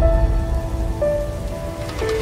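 Logo intro music: held notes that change about a second in, over a deep rumble and a rain-like hiss.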